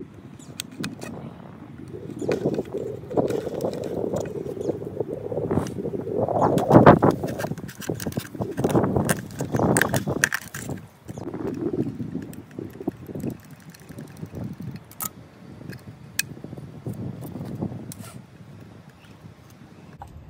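A knife blade cutting and prying through the thin sheet metal of an empty green bean can, an uneven scraping and crinkling of tin with scattered sharp clicks. It is heaviest in the first half and sparser near the end.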